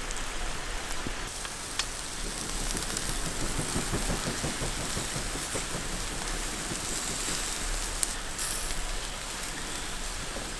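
Wild boar meat on skewers sizzling over a charcoal grill: a steady hiss with fine crackling, and a sharp click about eight seconds in.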